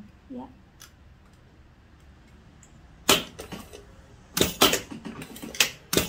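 Irregular sharp mechanical clicks and knocks from a single-needle industrial lockstitch sewing machine being worked by hand, starting about three seconds in and coming in two clusters.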